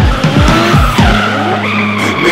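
A drift car sliding sideways with its engine running and tyres skidding, mixed with the falling bass hits of electronic music in the first second.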